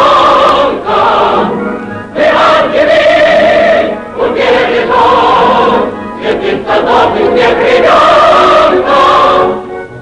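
Choir singing a Soviet film song in Russian with accompaniment, in phrases of about two seconds with short breaks between them.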